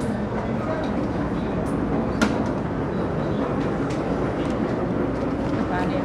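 Busy supermarket checkout: a steady hum of background noise with indistinct voices, and one sharp click about two seconds in.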